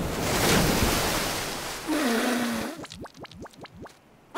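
Cartoon ocean wave crashing and washing up onto the shore, a loud rush that fades over about two seconds. It is followed by a short low vocal sound and a quick run of brief squeaky blips.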